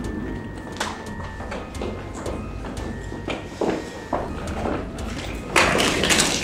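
High-heeled shoes clicking on a wooden parquet floor, then near the end a louder clatter as a mobile phone is dropped and breaks apart on the floor.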